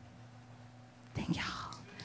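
A short pause after the guitar music stops, then a soft whispered voice about a second in.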